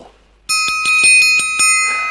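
Metal orchestral triangle rolled with its metal beater, starting about half a second in: a quick run of strikes, about eight a second, for roughly a second, then left ringing and slowly fading.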